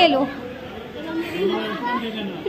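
Speech only: a few people talking over one another, a little quieter in the middle of the stretch.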